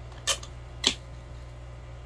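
Hand pruning snips cutting through the main stem of a cannabis plant at its base: two sharp snips about half a second apart, over a steady low hum.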